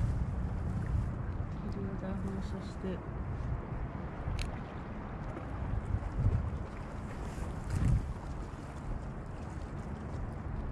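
Wind buffeting the camera microphone: a low rumble that swells in gusts, strongest around six and eight seconds in.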